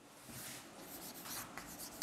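Chalk writing on a blackboard: faint, irregular scratches and taps as a number is written.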